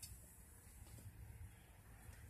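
Near silence: faint background hum with a faint tick about a second in.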